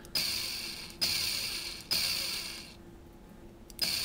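Electric motor of a battery-powered automatic tube-fitting tightening tool run in four short bursts, jogging its rotary jaw forward until it catches the fitting's nut. Each burst starts sharply and fades within about a second.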